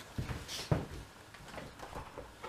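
Knocks and thumps from someone moving about indoors, handling things, with a brief rustle about halfway through and softer clicks near the end.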